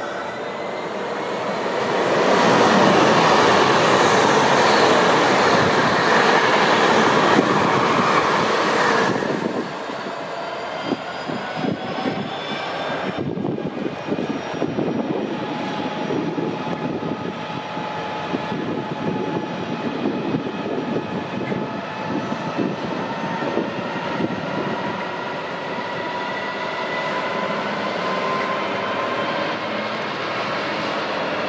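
An Avanti West Coast express train passing at speed, a loud rush lasting about seven seconds. After it comes a Freightliner Class 66 diesel locomotive hauling a container train. Its two-stroke V12 engine runs over the rumble and clatter of the wheels on the rails.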